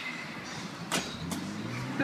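Two sharp knocks about a second apart-from-each-other, a third of a second apart, as a man climbs in through a house's front window over the sill and frame. A low hum rises in pitch near the end.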